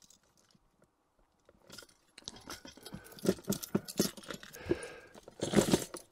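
Rigged soft-plastic pike lures being handled: metal leaders, swivels and treble hooks clink and rustle in a string of small irregular clicks. The clicks begin about a second and a half in, after a near-silent start.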